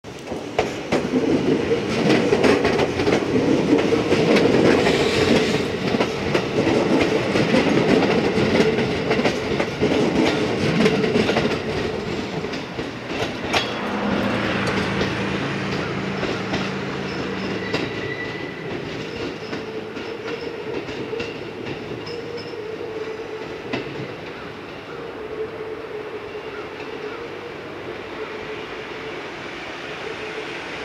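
Electric multiple-unit train passing close by, its wheels clattering over the rail joints, loudest for the first dozen seconds. After that comes a steady low hum, and the running noise fades as the train draws away down the line.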